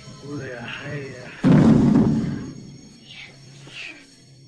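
A film soundtrack: a voice, then a sudden loud thud about a second and a half in that dies away over about a second, over background music.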